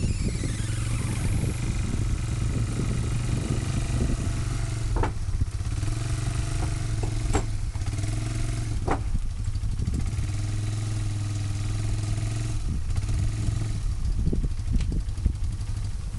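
Yamaha Bear Tracker ATV's single-cylinder engine running steadily at low speed as the quad is eased up a ramp onto a minivan roof. A few sharp knocks come around the middle.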